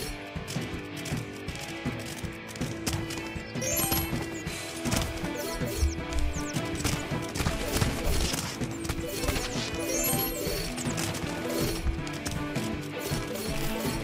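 Video game background music with frequent short pickup sounds and knocks as bones are collected, brief high-pitched chimes recurring every few seconds.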